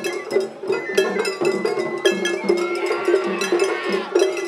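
Festival hayashi music from a dashi float: taiko drums beating a steady rhythm under rapid clanging strikes of a small hand gong (atarigane). A bamboo flute plays held notes that climb in the second half.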